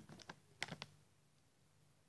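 Near silence with a few faint, quick clicks in the first second: handling noise as the snack bag is held up to the camera.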